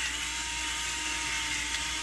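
Battery-powered electric pepper grinder, the gravity-activated kind that switches on when turned upside down, running steadily as its small motor grinds pepper.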